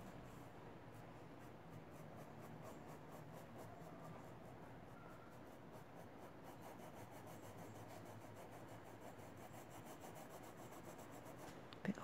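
Faint, soft scratching of a paintbrush stroking paint onto fabric.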